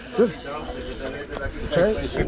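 Short bursts of men's voices over a low background rumble.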